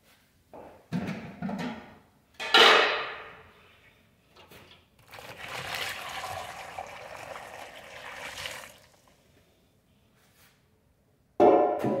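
Water poured from a bucket into a plastic basin where sneakers soak in soapy water: a steady pour lasting about three and a half seconds. Around it come a few sharp handling sounds, the loudest about two and a half seconds in and another near the end.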